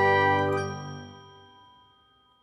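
Closing chord of an animated logo jingle: a bright, bell-like chord ringing on and fading out, dying away over about a second and a half.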